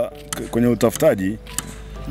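A short pause in a man's speech, with a couple of brief voiced sounds about half a second and one second in, over faint background music.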